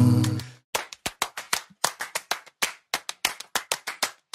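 The last held chord of the a cappella song fades out in the first half second, then a run of rhythmic hand claps, about four to five a second, keeps the beat until the vocals return.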